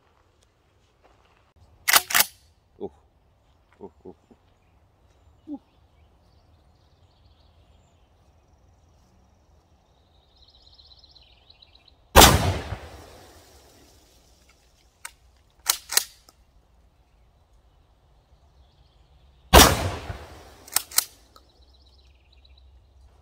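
Two 12-gauge shotgun shots, fired about seven seconds apart, each with a short ringing tail. After each shot comes a quick pair of sharp clacks as the pump action is worked.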